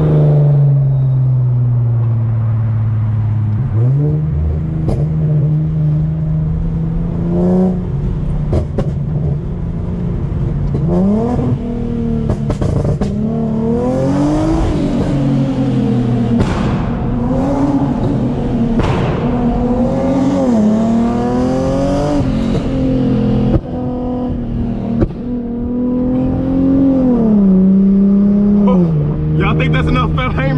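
Tuned Infiniti G37 sedan's 3.7-litre V6 with a full single-exit aftermarket exhaust, heard from inside the cabin while driving: the engine note climbs in pitch under throttle, drops, and climbs again several times, with steadier held stretches between.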